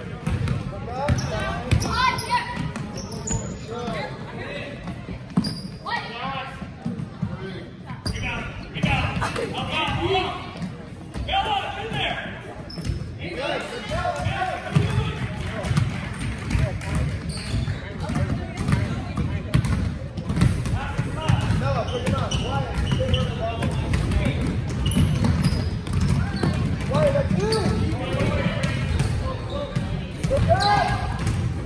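Basketball game sounds in a large gym: a basketball bouncing on the hardwood floor, mixed with players' and spectators' voices.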